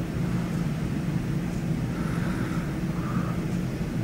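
Steady low hum of room noise, with no distinct event standing out.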